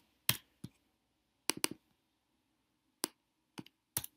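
Computer keyboard keystrokes and mouse clicks while editing text fields: about nine separate sharp clicks at an irregular pace, including a quick run of three about one and a half seconds in.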